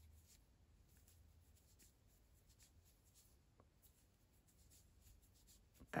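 Near silence: faint, scattered scratches and rustles of a 3.5 mm crochet hook working cotton yarn, over a low steady hum.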